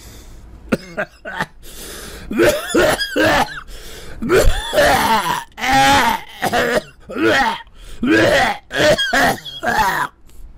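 A man in a coughing fit after holding in a lungful of pipe smoke: a dozen or so harsh, strained coughs, one after another, starting about two and a half seconds in.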